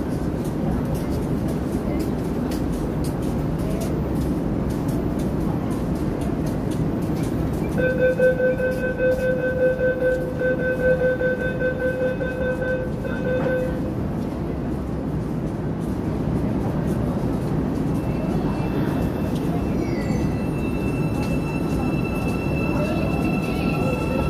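Cairo Metro Line 2 train at the platform. A pulsing door-closing warning tone sounds for about six seconds, starting about eight seconds in. From about eighteen seconds a high electric whine comes in, rising in pitch near the end as the train starts to pull away, all over a steady rumble of train and station noise.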